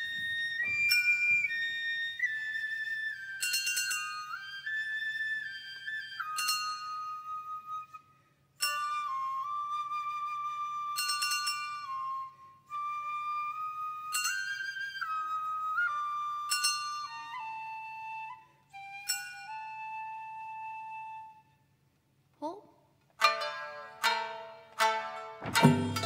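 Japanese bamboo transverse flute (fue) playing a slow solo melody in long held notes, phrase by phrase with short breaths between, the line stepping gradually lower. Near the end, shamisen plucking begins.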